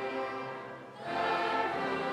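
Student choir singing a Christmas carol with orchestral accompaniment, in sustained chords. One chord fades away, and a second in a new, fuller chord comes in louder.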